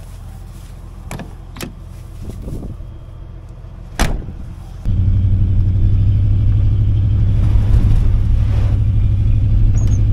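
A pickup truck's engine idling, with a sharp knock about four seconds in like a door shutting. About five seconds in it gives way abruptly to a much louder, steady engine and road drone heard from inside the cab as the truck drives on a gravel road.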